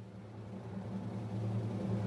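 A low, rumbling drone in the soundtrack, swelling steadily louder as a build-up before the music comes in.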